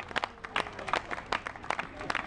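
Scattered applause from a small crowd, separate hand claps heard irregularly, several a second, as the song ends.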